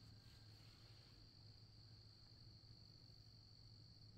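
Near silence of a rural evening with a faint, steady high-pitched trill of night insects.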